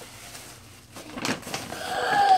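Tissue paper rustling and crinkling as it is pulled out of gift bags, with a louder rustle about a second in.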